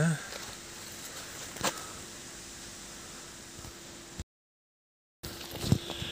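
Low, even background noise with a faint steady hum and a sharp click about a second and a half in, then a few more clicks near the end. The sound drops out completely for about a second past the middle.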